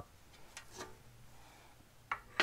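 Near silence: quiet room tone with a few faint light clicks in the first second.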